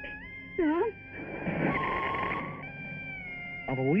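Film soundtrack background music holding a sustained chord, with a short spoken word about half a second in. A breathy noise lasting about a second follows around the middle, and a voice starts speaking again near the end.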